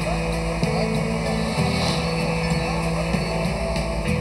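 Crane engine running steadily as it lifts a heavy load, under background music.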